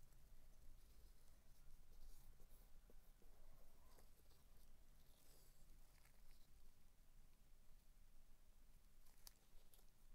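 Near silence with faint handling noise from a wooden stir stick working in a silicone mould, and a single sharp click near the end.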